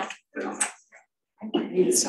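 Indistinct talking: short bursts of voices, a pause, then more continuous chatter starting near the end.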